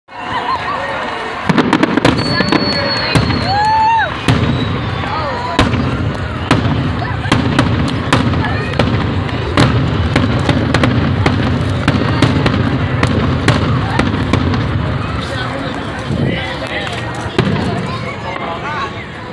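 Aerial fireworks bursting overhead: many sharp bangs and crackles, irregular and spread throughout, over a steady low rumble.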